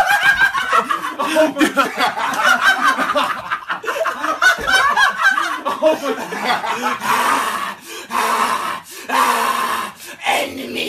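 A man laughing hard in quick, pulsing bursts. In the last few seconds it gives way to rougher, breathy strained vocal noises.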